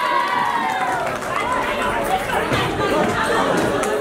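Audience chatter in a hall, many voices talking at once. A held, wavering note from the end of the song fades out in the first second.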